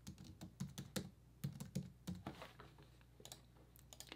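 Computer keyboard typing: a run of quiet, irregular key clicks that thins out near the end.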